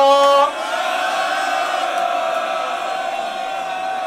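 Voices holding one long chanted note at a live hip-hop show. A shorter high note breaks off about half a second in, then a single steady note is held for about three and a half seconds with no beat underneath.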